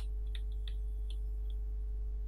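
Steady low electrical hum with a faint steady tone above it. About five faint, light clicks fall in the first second and a half.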